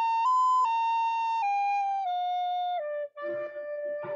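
Soprano recorder playing a short melody, one clear note at a time stepping downward, with a brief break about three seconds in before a last held note. The melody is played with a plain B instead of the B flat it needs, so it sounds off, as if out of tune.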